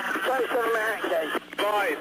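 Speech heard over a radio, thin and cut off above the voice range, starting abruptly, with a short break about one and a half seconds in.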